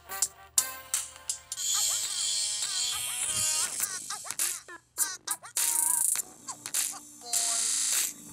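A song playing through the built-in speaker of a cheap knockoff iPod nano MP3 player. The speaker is of poor quality.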